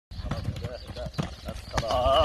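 Hooves of a dancing Arabian horse striking dry, packed dirt in a quick, uneven run of steps, about seven in two seconds.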